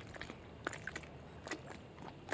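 Quiet outdoor background with a few faint, short clicks and crackles scattered through it.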